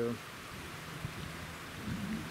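Steady hiss of the flooded Big River's fast, high brown water rushing past the bridge and through the submerged trees.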